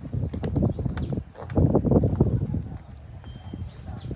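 Wind buffeting the microphone in uneven gusts, strongest about halfway through.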